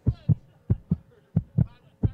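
Heartbeat sound effect in a dance track's break: three pairs of low thumps in a lub-dub rhythm, about one and a half pairs a second.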